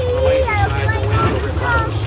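Voices of people close by, with a steady low rumble of drag-race engines idling beneath them.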